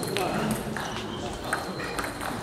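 Table tennis ball clicking off paddles and the table as a rally gets going: a few sharp, irregular clicks over a murmur of voices.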